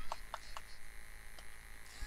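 Faint steady electrical hum with a few soft ticks in a gap between commentary.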